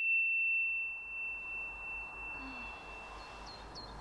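A single high bell-like ding, struck just before, rings on as one pure tone and fades away over about three seconds. A few faint short chirps come near the end.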